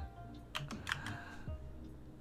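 Computer keyboard typing: a handful of separate keystrokes clicking as a line of code is entered.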